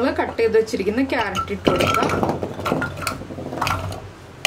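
Chunks of raw carrot tipped from a bowl into an empty Hawkins Contura Black hard-anodised pressure cooker, clattering and knocking against the pot for about two seconds from about halfway in.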